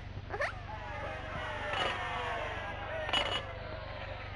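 Cartoon sound effect of a voice-recording machine: a whirring tone made of several pitches that slides slowly downward, broken by two short noisy bursts about two and three seconds in, over the steady hum of an old film soundtrack.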